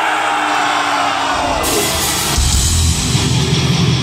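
Heavy metal band playing live, starting the song: yelling over crowd noise at first, then distorted electric guitars and drums come in about a second and a half in and are at full weight by about two and a half seconds.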